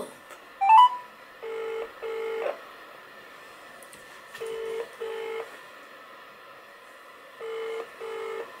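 Ringback tone of an outgoing phone call heard through a smartphone's loudspeaker: a double ring, two short buzzing tones close together, repeating about every three seconds, three times, while the call waits to be answered. About a second in, a short rising run of beeps sounds as the call connects.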